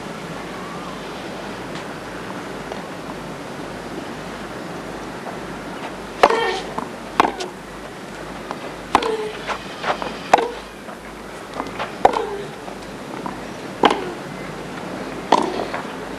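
Tennis rally on a hardcourt: the pock of racket strikes on the ball and ball bounces, one every second or so, starting about six seconds in. Before that only a steady hiss of the old broadcast recording.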